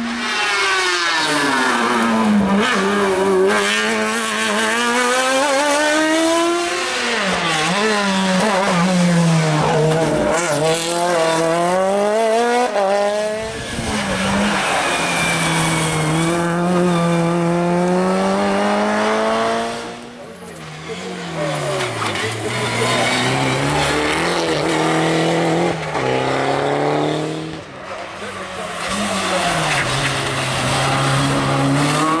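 Race car engines on a hill climb, about five cars in turn. Each revs up hard, drops at each gear change and climbs again, and the sound breaks off every six or seven seconds as the next car takes over.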